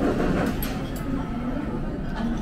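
Restaurant room noise: a steady low hum with faint voices in the background, and a couple of light clicks from metal chopsticks against a plate about half a second and a second in.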